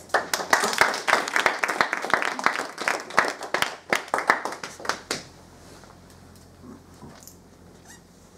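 A small audience clapping by hand. The clapping stops about five seconds in.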